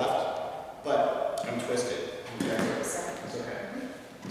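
A man's voice talking, with no other clear sound above it.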